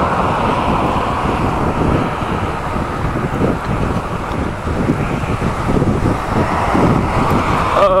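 Steady wind rush on the microphone and road noise from an e-bike running downhill at about 25 to 30 mph, with cars passing close alongside.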